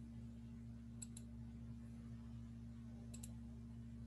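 Computer mouse double-clicking twice, two quick clicks each time and about two seconds apart, over a faint steady low hum.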